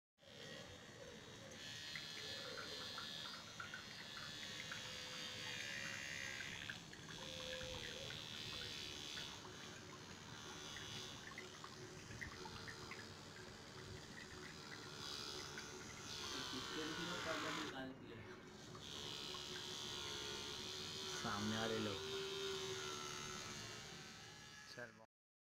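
A small DC motor running a homemade water pump, a steady whir, with water splashing.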